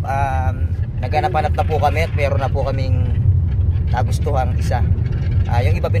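A man talking inside a moving car, over the car's steady low road and engine rumble in the cabin.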